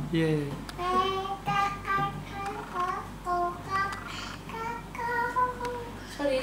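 A young girl singing a simple tune in a high voice: a string of short, separate held notes.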